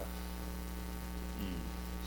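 Steady electrical mains hum with a buzzy stack of higher overtones, constant in level throughout.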